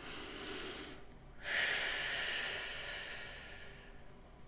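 A woman breathing deeply. A softer breath comes in the first second; after a brief pause, a louder, longer breath starts abruptly and fades out over about two seconds.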